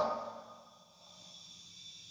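A pause in a man's speech: his last word trails off in the first half second, then only faint room hiss.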